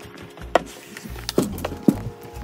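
Four sharp wooden knocks and clicks at uneven spacing, over quiet background music.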